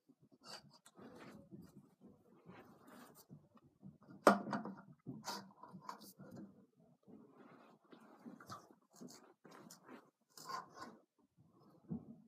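Stunt scooter parts being handled and fitted together by hand: scattered light clicks, scrapes and rustles, with one sharp knock about four seconds in.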